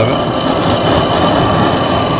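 Handheld gas torch burning with a steady hiss, its flame held to the end of a synthetic rope to melt and seal it.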